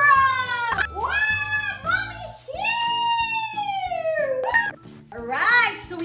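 Background music with a high-pitched child's voice squealing and calling over it in gliding notes, including one long call in the middle that falls in pitch.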